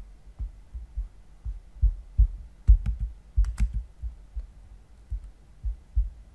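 Irregular low thumps of knocking or handling noise picked up by a desk microphone, two or three a second, with four sharp clicks a little past the middle as the computer is worked at the end of a screen recording.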